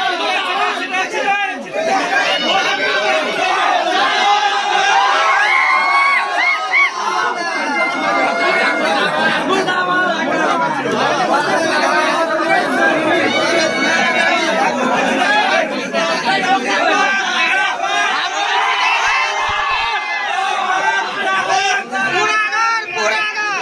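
A large crowd of students shouting and talking at once, many voices overlapping without a break.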